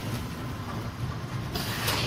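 Vertical form-fill-seal bagging machine running, a steady low mechanical hum, with a short burst of hiss about one and a half seconds in as it cycles.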